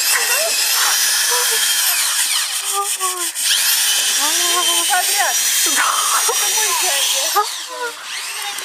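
Power drill driving into wood, its motor whining at speed; it winds down about two seconds in, spins up again a second or so later, and stops near the end.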